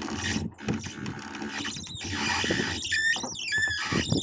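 Hand-hauled dinghy hoist squeaking as the inflatable dinghy is pulled up by its halyard. A few short, high, gliding squeaks come in the last second or so.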